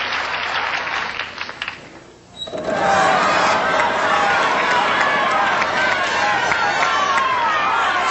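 Studio audience applause fading out. Then, from about two and a half seconds in, many audience voices shout together as the game-show wheel spins, with its pointer ticking against the pegs.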